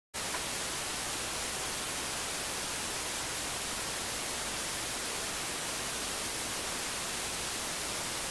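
Steady, even static hiss with no engine, voice or other distinct sound standing out of it.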